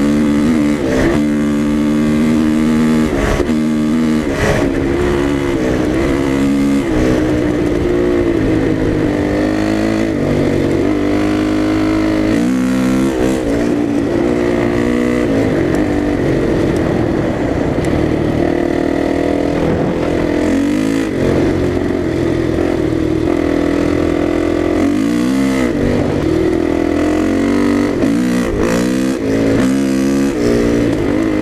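Dirt bike engine running hard at road speed, its pitch climbing and dropping several times as the rider works the throttle and shifts gears.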